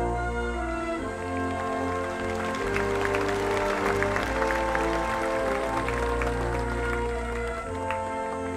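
Concert wind band holding the sustained closing chords of a vocal ballad, with audience applause swelling in from about two and a half seconds in and thinning out near the end.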